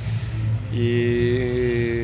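A man's voice holding one long, drawn-out "iii" (the Croatian word for "and") at a steady pitch, a hesitation while he searches for words. It starts about three-quarters of a second in and is still going at the end, over a steady low hum.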